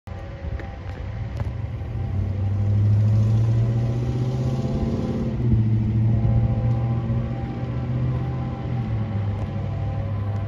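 Deep, steady drone of approaching GE ES44AC diesel locomotives, growing louder over the first three seconds and then holding.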